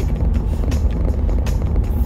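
Steady low rumble of a car's engine and road noise heard from inside the cabin while the car is moving.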